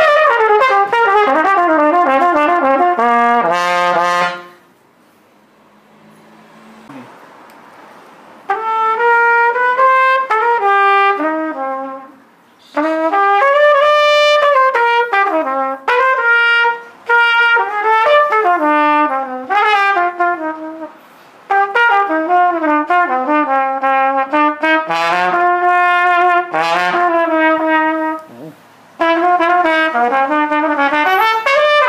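Henri Selmer Sigma trumpet played solo. It opens with a falling run of notes, pauses for about four seconds, then plays phrases of melody with short breaks between them.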